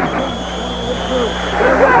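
A referee's whistle blown once, steadily, for about a second and a half, over stadium crowd noise. A steady low hum runs underneath in the old broadcast audio.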